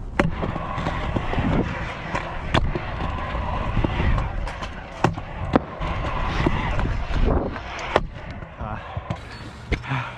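Stunt scooter wheels rolling over concrete ramps with a steady rough rumble, broken by about five sharp clacks of the scooter landing and striking the ramps.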